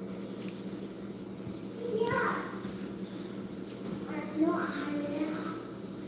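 A child's voice making two short, quiet vocal sounds, one about two seconds in and a longer one about four seconds in, over a steady low hum.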